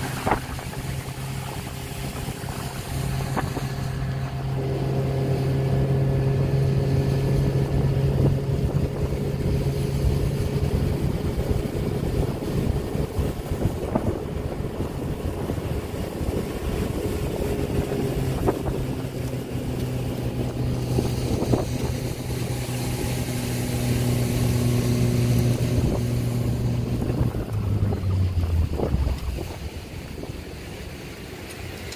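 Motorboat engine running steadily under way, with wind and water rushing past. Near the end the engine note steps down in pitch as the boat throttles back.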